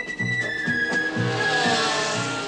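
Soundtrack music with a repeating low note, mixed with a 1960s Formula One car's engine passing. The engine note falls in pitch, and a rush of noise swells as the car goes by near the end.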